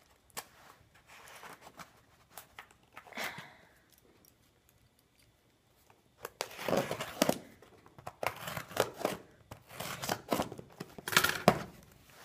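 Scissors cutting through packing tape along the seam of a cardboard shipping box: a few faint clicks at first, then a run of loud scraping and tearing of tape and cardboard in the second half, ending as the flaps are pulled open.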